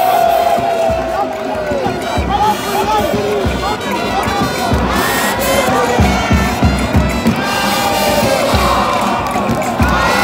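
Stadium football crowd cheering, shouting and singing, many voices overlapping, with repeated low thumps underneath. A long held note slides down in pitch and fades out about two seconds in.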